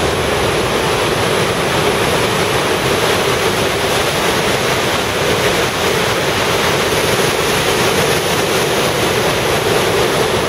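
Whitewater of the Coquihalla River rushing through a narrow rock gorge: a loud, steady rush of water.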